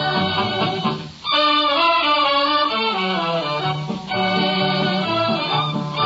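An orchestra playing music, with a brief break about a second in before it comes back in full.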